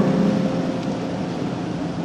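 Steady ambient noise of a large concert arena in a gap between numbers, with a faint held note fading out in the first second.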